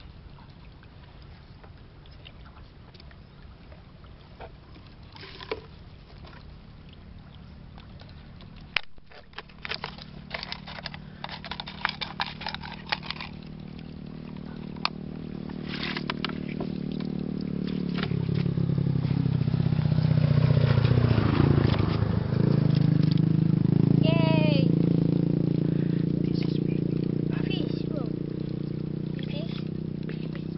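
A motor vehicle's engine grows louder, passes loudest a little past the middle, and slowly fades. Before it comes in there are quick clicks and knocks of plastic bottles being handled in a tub of water.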